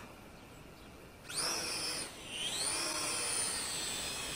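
Helicute H818HW Hero toy quadcopter's four small motors and propellers spinning up for takeoff. A high-pitched whine rises about a second in, dips briefly, then climbs again and holds steady.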